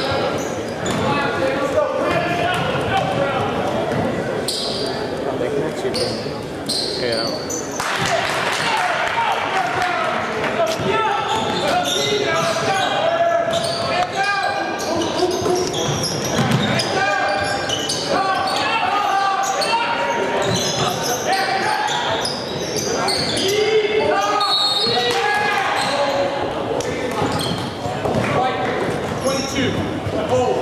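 Gym sound of a basketball game: many voices from the crowd and players echoing in a large hall, with a basketball bouncing on the hardwood court.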